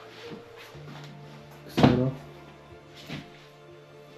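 Background music with steady held tones. About two seconds in comes a loud wooden knock with a short ring as a wardrobe door is swung open, with lighter clicks before and after.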